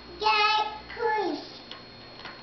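A toddler's high-pitched, sing-song vocalising without clear words: a drawn-out note, then about a second in a shorter call falling in pitch.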